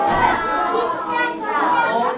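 A room of children calling out their fathers' names all at once on cue: a jumble of many overlapping young voices.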